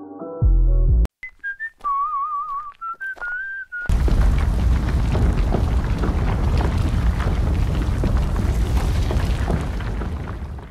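A few music chords end about a second in, followed by a few seconds of wavering, sliding whistled notes. From about four seconds in comes a loud, continuous rumble, an earthquake rumble effect.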